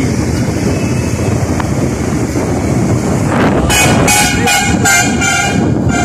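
Steady road rumble from riding a motorcycle. About two-thirds of the way in, a vehicle horn honks in a quick run of short beeps.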